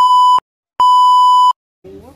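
Loud electronic test-tone beep of a single steady pitch, sounded twice: one ending just under half a second in, then after a short silent gap a second, slightly longer beep. It is the color-bar test tone edited in to cover a stretch spoiled by a passing truck.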